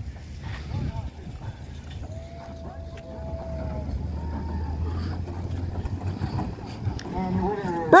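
Soapbox derby cars rolling down the concrete lanes. The low rumble of their wheels grows about halfway through, with scattered spectator voices.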